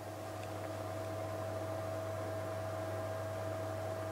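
Steady low electrical hum under a faint even hiss, with a thin steady whine above it: the background noise of the recording chain.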